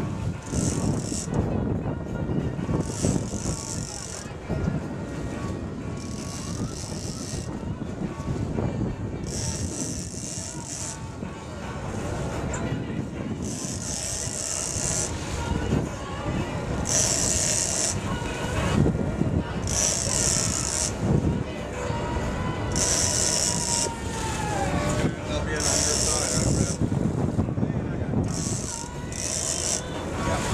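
80-wide big-game reel's drag buzzing in repeated high-pitched bursts of about a second as a yellowfin tuna takes line, over a steady rumble of boat engine, wind and water.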